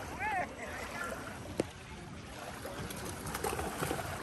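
Outdoor lakeside ambience: a steady low rush of wind and small waves, with a short distant voice-like call near the start and a single sharp click about a second and a half in.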